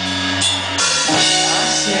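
Live pop-punk band playing loudly, drum kit to the fore with held instrument notes, in a gap between sung lines.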